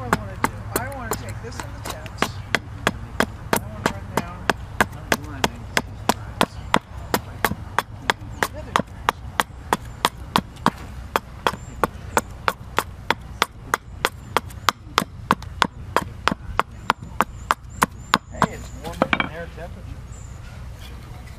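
Gränsfors large carving axe hewing a green walnut spoon blank held upright on a wooden chopping stump: a steady run of short, sharp chops, about two to three a second.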